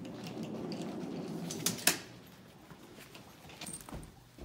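Rolling suitcase wheels rumbling across the floor, with two sharp knocks a little under two seconds in as the case reaches the stairs, then softer steps and knocks on the staircase.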